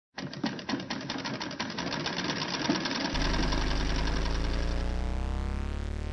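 A sewing machine running fast for about three seconds, its needle stitching with a rapid, even clatter. It then gives way to a held musical chord.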